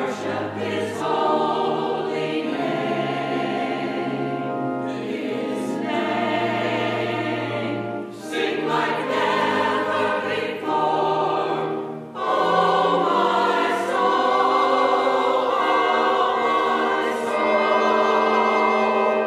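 Church choir of mixed voices singing together, with short breaks between phrases about eight and twelve seconds in; after the second break the singing is louder.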